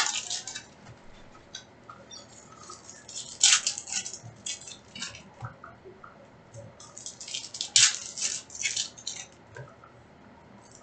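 Foil trading-card pack wrappers crinkling and tearing as baseball card packs are ripped open, in separate bursts at the start, about three and a half seconds in and around eight seconds, with quieter rustling of cards being handled and set on a stack between.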